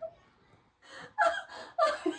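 A woman laughing breathily and gasping. After a short catch of breath there is a near-silent pause, then short bursts of stifled laughter start about a second in.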